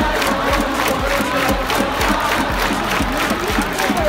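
Large baseball stadium crowd chanting and cheering in unison to a steady beat, with music from the fans' cheering band.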